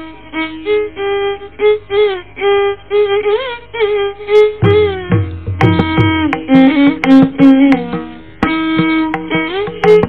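Carnatic violin playing in raga Sindhu Kannada, its notes sliding and bending in ornamented glides over a steady drone. The mridangam joins about halfway in with deep drum strokes.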